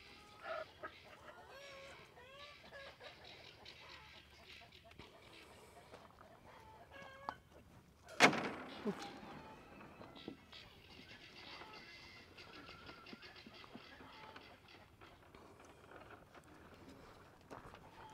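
Chickens clucking faintly in the background, in short scattered calls, with one brief louder burst of noise about eight seconds in.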